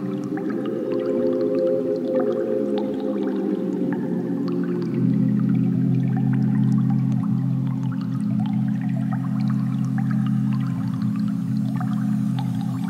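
Berlin School-style electronic music played live on synthesizers, a Waldorf Quantum and an ASM Hydrasynth. A sustained low pad sweeps downward over the first few seconds and settles into a held low chord about five seconds in, with faint short plucked sequence notes above it.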